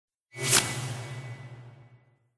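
Logo sound effect: a whoosh that swells in and peaks about half a second in, leaving a low hum and a faint high tone that fade away over the next second and a half.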